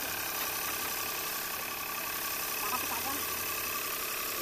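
An engine idling steadily, with faint voices in the background.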